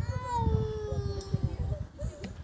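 One long, drawn-out high call that rises briefly and then slowly falls in pitch for nearly two seconds, over a low rumble.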